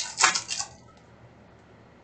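Foil wrapper of a Panini Mosaic basketball card pack torn open with a few sharp crinkling rips, over within the first second.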